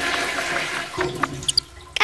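Rushing, flushing water sound effect that fades out about a second and a half in.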